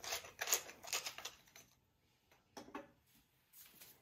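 Hand pepper grinder being twisted: a quick run of grinding clicks that stops about a second and a half in, followed by a couple of faint handling sounds.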